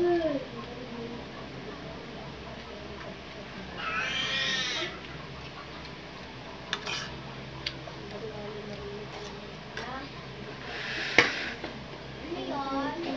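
A cat meowing: one long high meow about four seconds in and another near the end. A single sharp click just before the second meow is the loudest sound.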